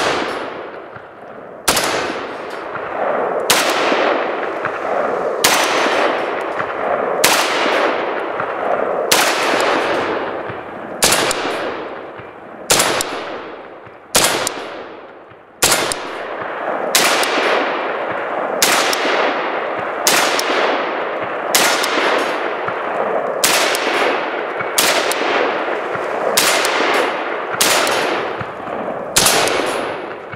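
Romanian MD.90 AK-pattern rifle in 7.62x39mm fired in single shots at a steady pace, about one a second, each shot trailing a long echo.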